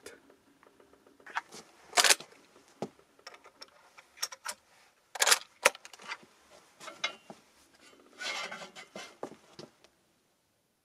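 Handling of a Pedersoli Droptine lever-action rifle as it is readied to shoot: scattered sharp metallic clicks and scrapes, with a short rustle near the end and no shot fired.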